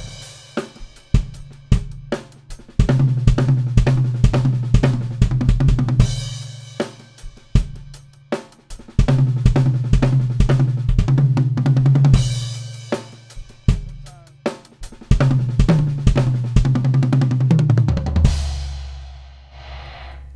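Tama acoustic drum kit played solo: kick and snare strokes breaking into three runs of fast single strokes, closing near the end on a cymbal crash that rings out.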